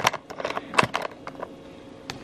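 A few light knocks and clicks of things being handled at close range, the loudest just under a second in, followed by a quiet room.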